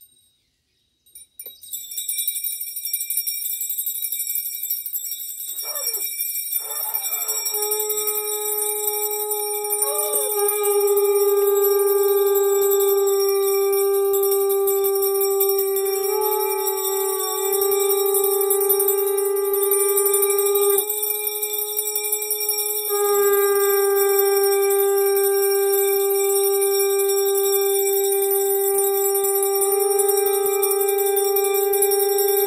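Conch shells (shankh) blown in a long, steady held tone that starts after a couple of short wavering attempts about seven seconds in, breaks off for a breath around twenty-one seconds and resumes. A high, steady ringing lies under it from about two seconds in.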